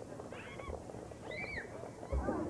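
Faint, high-pitched calls of children's voices carrying across an open field, with one rising-and-falling cry about a second and a half in.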